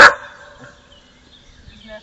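A dog barks once, short and loud, right at the start, then only faint background sound follows.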